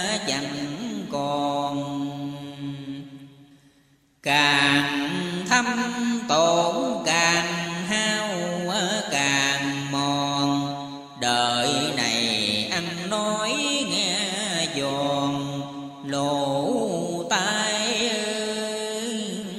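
Chanted verse sung in long, wavering melodic lines, with music. It fades out about three to four seconds in, then starts up again after a brief silence.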